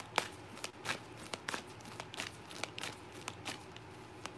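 A deck of large oracle cards being shuffled by hand: an irregular run of light clicks and flicks of card stock.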